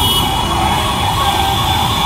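Heavy, congested road traffic: engines and motorcycles running steadily, with a wavering emergency-vehicle siren over it.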